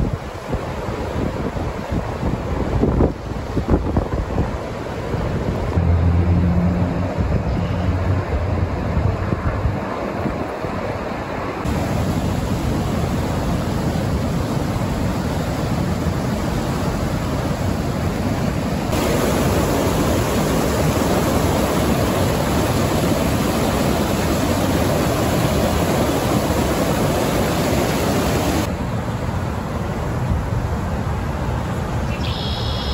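River water rushing over a low-head dam's weir: a steady roar of whitewater that fills out and grows brighter about two-thirds of the way in. Wind buffets the microphone in the first part.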